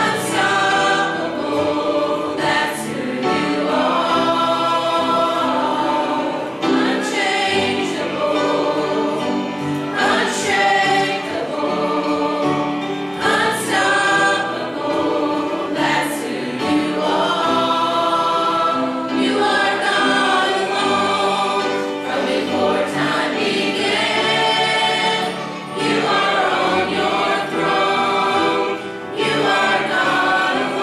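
Church choir of mixed voices singing a gospel hymn together, holding and moving through sustained notes.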